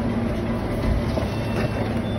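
Steady low machine hum over a noisy background, with a few faint ticks.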